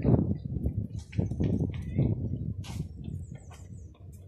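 Outdoor ambience: irregular low rumbling on the microphone, loudest at the start, with faint high chirps of small birds scattered through it.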